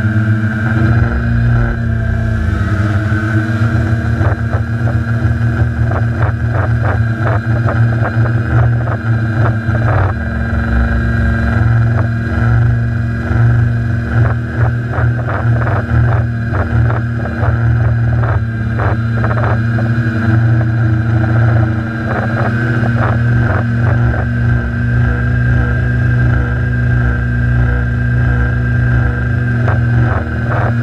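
Quadcopter's electric motors and propellers running in flight, heard from the onboard camera: a steady high whine over a strong low hum, with frequent short crackles throughout.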